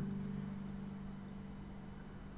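Final chord of a guitelele, a small six-string nylon-strung guitar-ukulele, ringing out and fading away slowly.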